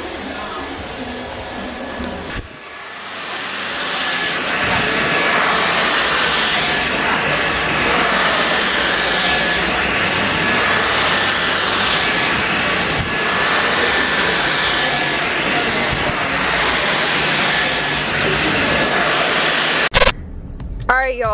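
Handheld hair dryer blowing on wet hair, a steady rushing noise with a faint high whine, which dips briefly about two seconds in and then runs louder.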